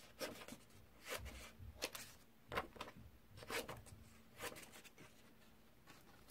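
Scissors snipping through thin white card, a string of quiet separate cuts about one a second.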